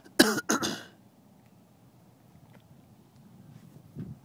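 A person close to the microphone coughs twice in quick succession, within the first second.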